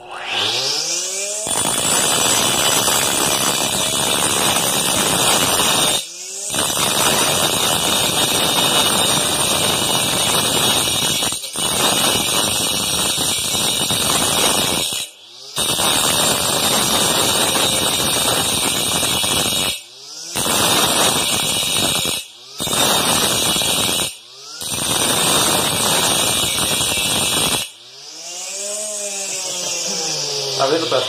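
Homemade saw driven by a hair-dryer motor spinning up, then its segmented cutting disc grinding into an aluminium tube with a loud, harsh noise broken by several short breaks, and winding down near the end. The disc is old and blunt, so it is not cutting much.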